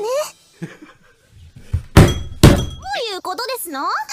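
Two loud thuds about half a second apart, about halfway through, followed by an anime girl's voice in drawn-out exclamations that swoop up and down in pitch.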